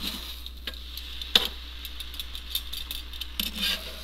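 Metal kitchen tongs clicking and tapping against an electric griddle as cheese slices are laid on a sandwich, with one sharp click about a third of the way in, over a faint sizzle from the griddle.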